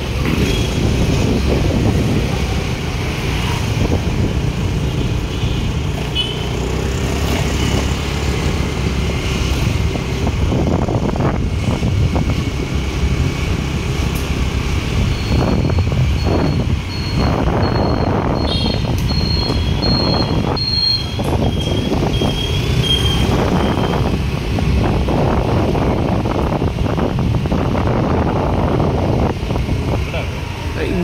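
Steady engine and road noise of a moving vehicle on a city street. About halfway through comes a run of short, evenly spaced high electronic beeps lasting several seconds, first at one pitch and then at a lower one.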